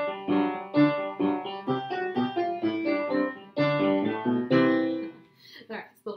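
Upright piano playing a quick, even run of notes from an easy ragtime-style duet, stopping about five seconds in.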